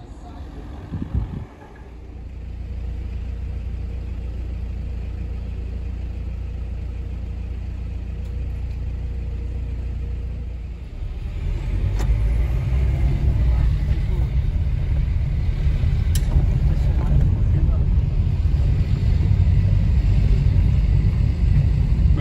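Low rumble of a car driving, heard from inside the cabin: engine and road noise, steady at first and growing louder and rougher about halfway through as the car moves on.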